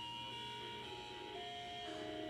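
Quiet background music of long held notes that shift in pitch every half second or so.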